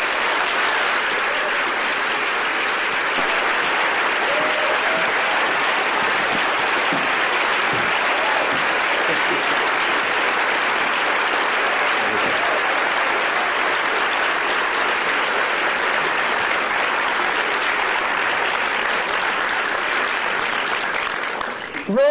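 Sustained applause from a large audience, steady throughout and dying away near the end.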